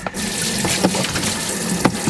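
Water running from a sink sprayer into a plastic tub, a steady rush as it soaks the paper towels lining the tub, with a few light knocks.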